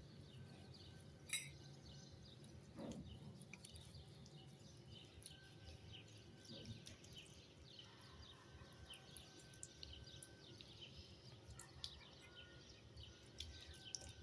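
Near silence with faint birds chirping in the background. A spoon clinks once against a ceramic bowl about a second in, and there is a soft sound of stirring a thick mask paste.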